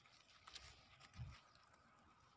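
Near silence: faint rustling of strawberry plants as a hand handles their leaves and berries, with a soft low bump a little past the middle.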